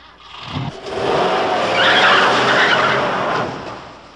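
Car pulling away hard with its tyres squealing. The noise builds over the first second, holds loud, and fades toward the end.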